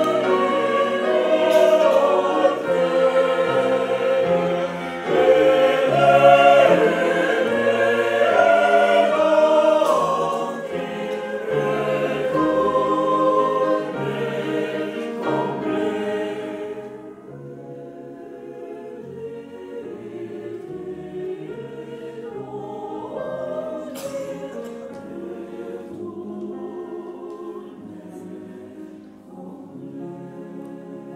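Mixed choir of women's and men's voices singing together, full and loud for the first half, then dropping to a soft, quieter passage about halfway through.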